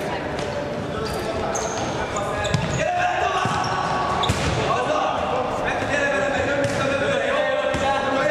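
Futsal ball being kicked and bouncing on a wooden sports-hall floor, echoing in the large hall. Players and spectators call out in the background.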